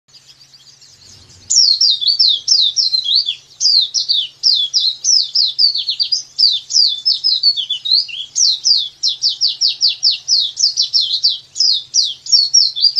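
Pleci dakbal (white-eye) singing a long, fast run of high, downward-sweeping notes, several a second, starting about one and a half seconds in: a long 'nembak' (shooting) song.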